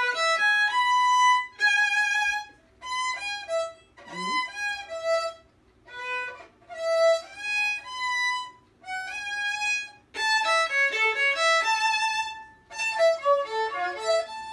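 Violin played in short phrases of a few notes each, with brief pauses between them.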